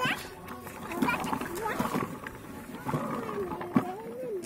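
A young child's voice making long, wavering vocal sounds rather than words, with a sharp knock near the end.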